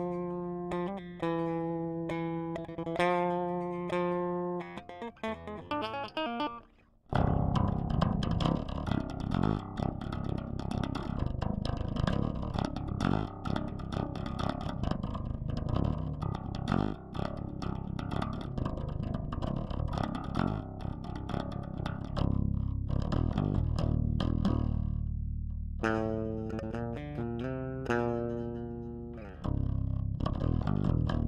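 Electric bass played as a lead instrument, a melody of held notes changing about once a second. About seven seconds in a much denser, louder passage with a steady beat takes over, easing back to held bass notes in the last stretch before picking up again at the very end.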